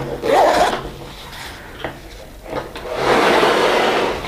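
Nylon fabric of a 5.11 Rush 72 backpack rustling and rubbing as the pack is handled: a short burst about half a second in, then a longer, louder rustle in the last second as the pack is folded over.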